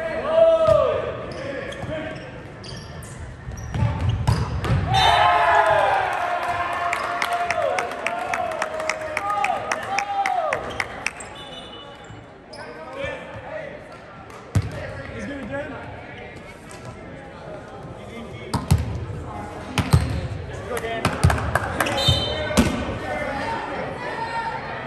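Volleyball players shouting and cheering in a gym, with a run of quick claps and several sharp bounces of the volleyball on the hardwood court, echoing in the hall.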